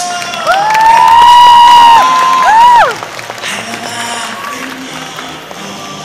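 A loud high-pitched voice holds one long call for about a second and a half, then gives a short rising-and-falling cry, over stage music with a crowd cheering.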